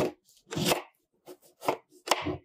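Kitchen knife cutting through a lemon, the blade crunching through the rind and flesh in three main short strokes spaced well under a second apart.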